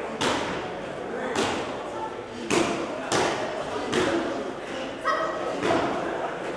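Boxing gloves landing punches in a live bout: about seven sharp thuds at uneven intervals, roughly one a second, echoing in a large hall. Shouting from the corners and spectators runs underneath.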